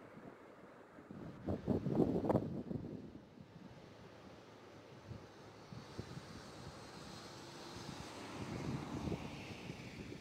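Wind buffeting the microphone in gusts, with a stronger gust about a second and a half in and another near the end, over a faint steady rush.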